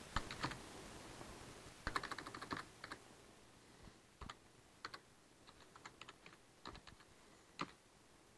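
Computer keyboard typing: faint keystrokes, a quick run of them about two seconds in, then scattered single key presses.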